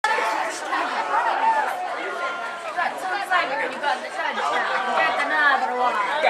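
Several people talking at once close by: spectators chattering at a football game, voices overlapping without a break.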